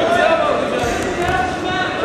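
Several people shouting and calling out at once in a gym hall, as spectators and coaches yell during a wrestling match, with a dull thump about halfway through.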